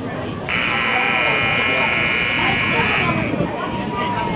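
One long electric horn blast of about two and a half seconds, starting about half a second in and cutting off sharply, over crowd chatter.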